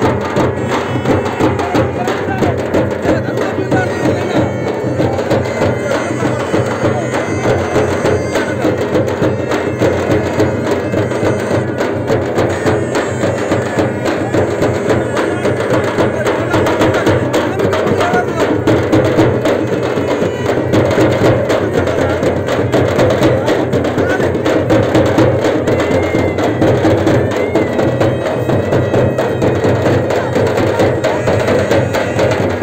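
Frame drums (dappu) beaten in a rapid, unbroken rhythm, loud and steady, with crowd voices mixed in.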